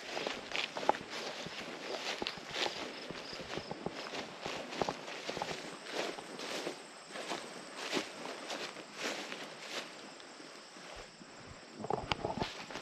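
A hiker's footsteps through tall grass and weeds, about two steps a second, with vegetation rustling against the legs; the steps thin out near the end.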